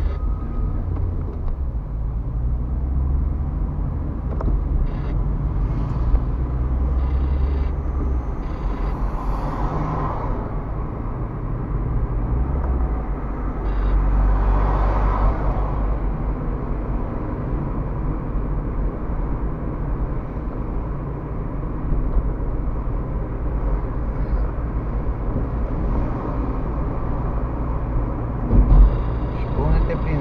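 Road noise inside a moving car's cabin: a steady low rumble of engine and tyres, swelling briefly twice, with a single thump near the end.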